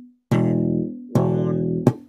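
Electric bass guitar played with the slap technique: two thumb-slapped notes, each ringing and fading, the first about a third of a second in and the second just after a second in, then a short sharp click near the end.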